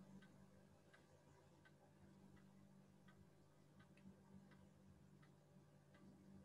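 Near silence: faint room tone with soft, evenly spaced ticks, a little more than one a second.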